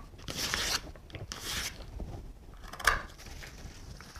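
A knife's blunt back edge drawn along the back of an aspidistra leaf to make it drape: a couple of short dry scrapes, then one sharp click near the end of the third second.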